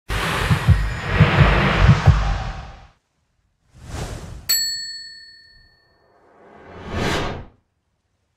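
Intro sound effects for the logo card: a rushing noise with low thuds for about three seconds, then a whoosh, a bright bell-like ding about four and a half seconds in that rings away, and a swell that rises and cuts off suddenly near the end.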